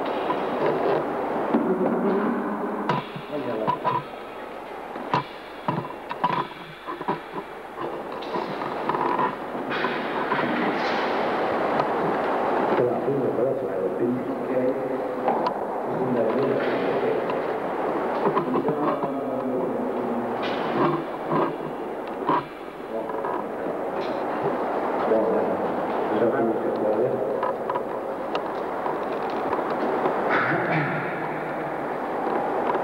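Indistinct voices talking on a noisy, low-fidelity old recording, with scattered sharp clicks and knocks.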